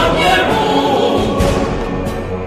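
Music: a choir singing a song in held, sustained notes, with a few sharp beats behind it.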